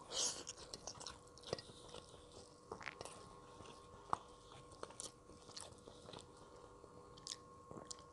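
Faint chewing of yellow rice and fried side dishes eaten by hand, with scattered small mouth clicks and smacks.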